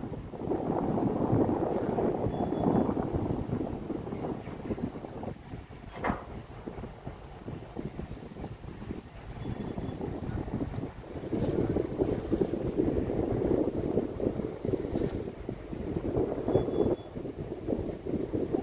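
Wind buffeting the microphone on the deck of a moving ship, coming in gusts: strong at first, easing for several seconds in the middle, then rising again. A single short click about six seconds in.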